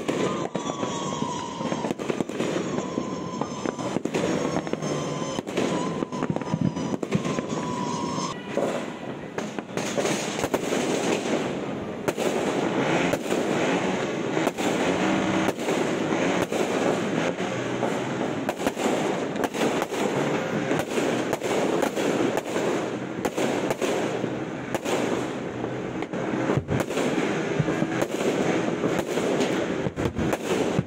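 New Year fireworks and firecrackers going off continuously, a dense crackle of many overlapping bangs. Wavering whistle tones run through the first eight seconds or so, and from about twelve seconds in the bangs grow louder and denser as fireworks go off close by.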